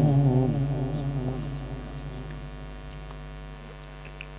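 The last of a reciter's long held note of Quran recitation dies away through the public-address system in the first second or so, leaving a steady electrical mains hum from the sound system.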